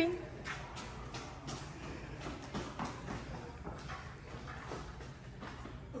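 Scattered soft knocks, taps and rubbing squeaks, irregular, several a second, as a large balloon arrangement on a hoop frame is handled and shifted, over a steady low hum.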